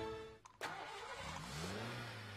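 A small car's engine starting about a second in, its pitch rising briefly before it settles into a steady run.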